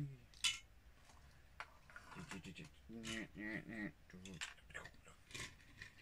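Small plastic LEGO vehicles being handled and set down on a wooden table: a sharp plastic click just after the start and several lighter clicks and taps after it. Between them a man's low murmured voice sounds briefly, without clear words.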